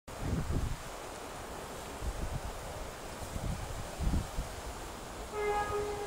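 Wind buffeting the microphone in gusts. Near the end, two short blasts at one pitch from a train horn as a train nears the level crossing.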